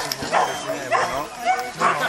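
Giant Schnauzer barking repeatedly, about two barks a second.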